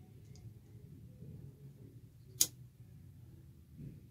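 A disposable lighter struck once, a single sharp click about two and a half seconds in, to light a flame for melting the frayed end of the claw string. A fainter tick comes near the start.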